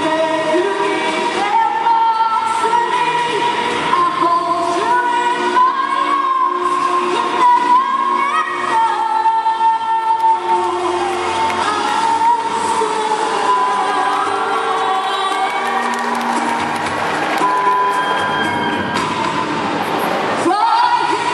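A young female singer singing into a handheld microphone over instrumental accompaniment, holding long notes that glide in pitch.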